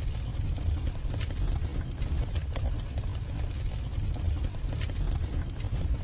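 Low rumbling background noise with scattered, irregular sharp clicks or taps: a non-musical sound-effect intro at the head of the track, with no instruments or voice yet.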